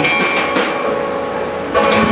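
Electric guitars and drum kit closing out a song: the held chord breaks off, cymbals and strings ring on, and a loud final hit comes near the end.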